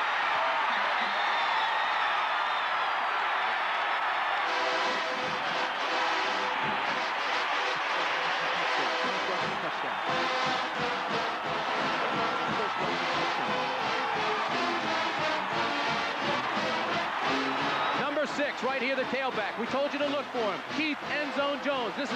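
A stadium crowd cheering a touchdown, with a marching band's brass playing over the cheering from about four seconds in. A man's voice comes in near the end.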